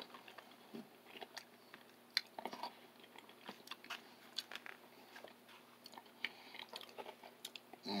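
A person chewing a mouthful of chili close to the microphone: faint, irregular mouth clicks and smacks.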